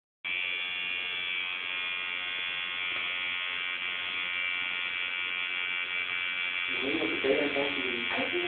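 Electric tattoo machine buzzing steadily at an even pitch; voices start talking over it near the end.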